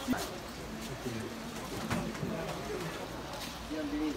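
Faint, indistinct voices of people talking in the background, over a low steady murmur.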